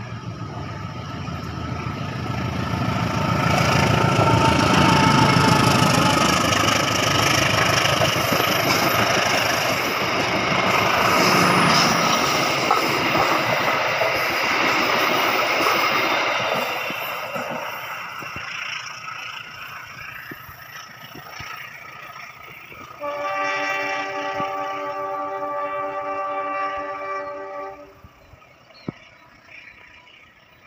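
Box-nose diesel locomotive hauling a passenger train passes close by: the engine's rumble builds to a peak a few seconds in, then the carriages' wheels run past on the rails and fade as the train moves away. Near the end a train horn sounds one steady blast of about five seconds, cut off sharply.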